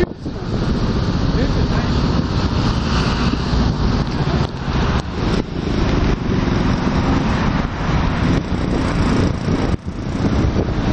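Road traffic on a busy street: cars and vans going by in a steady stream, with wind buffeting the microphone.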